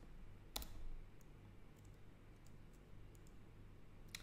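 Near silence with one sharp click about half a second in and a few faint ticks after it, over a low room hum.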